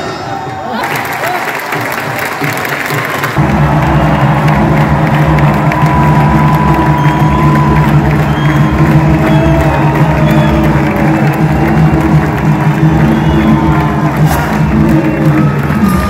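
Music with a large crowd cheering and shouting. About three seconds in, a loud sustained low tone of the music sets in and holds.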